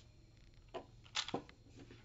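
A few brief handling noises as a freshly lubed Rubik's Cube is wiped off: short scuffs and a click, clustered about a second in.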